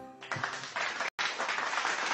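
Applause, a steady even patter that starts just after the last sung note ends and breaks off for an instant about a second in.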